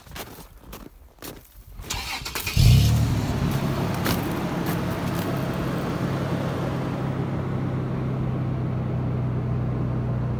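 Pickup truck engine started: a few clicks, a short burst of cranking, then the engine catches with a jump in level about two and a half seconds in and settles into a steady idle.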